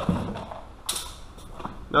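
Plastic intake parts creaking as they are handled, with one short sharp click about a second in.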